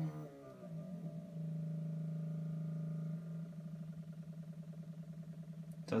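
AutoTrickler V2 powder trickler's motor humming as it trickles the last fraction of a grain into the scale pan. It runs steadily, then about three seconds in it switches to a rapid pulsing of about eight pulses a second as it ramps down toward the target weight, going slowly so that it will not overshoot.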